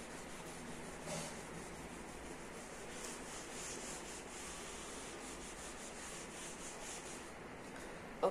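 Whiteboard eraser rubbed back and forth across a whiteboard, a faint, quick run of wiping strokes as the marker writing is cleaned off.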